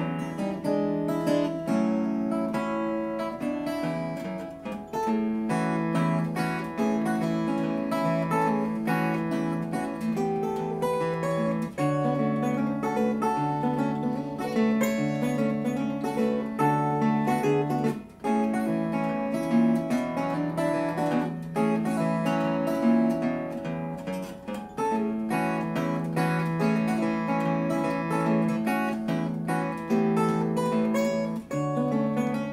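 Unplugged Eastman Pagelli PG2 archtop acoustic guitar, fingerpicked solo in an open D-G-D-E-B-D tuning capoed at the second fret, with a bass line running under the melody notes. The playing is continuous apart from a short break about eighteen seconds in.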